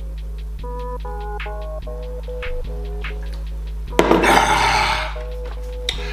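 Hip-hop background beat with a repeating melody. About four seconds in, a loud, breathy gasp lasting about a second as the drinker comes up from chugging a bottle of soda.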